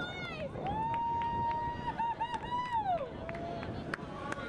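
A person's long, high-pitched held shout of celebration for a rugby try, lasting about two and a half seconds, wavering and falling away at the end, with other voices calling out around it and a few sharp ticks.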